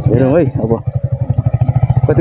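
Yamaha MT-15's single-cylinder engine running at low revs with a steady, even low pulsing as the motorcycle is ridden slowly. A voice cuts in briefly at the start.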